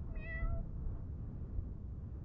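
A cat meowing once: a single short call of about half a second, heard over a steady low rumble.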